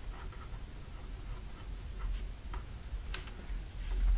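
Pen writing on cardstock: faint scratching of the pen tip across the card, with a few light ticks.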